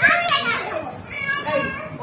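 Young children's excited shouting during play: a loud high-pitched shout right at the start, and another shorter high shout a little past halfway.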